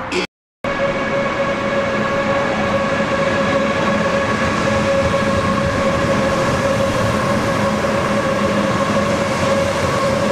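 ICE high-speed electric train moving along a platform: a steady whine from its electric drive over the rumble of wheels on the rails. The sound cuts in after a split second of silence near the start.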